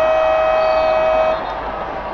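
A loud horn sounding one steady held note that cuts off about one and a half seconds in.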